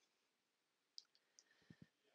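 Near silence: quiet room tone with a few faint, short clicks in the second half.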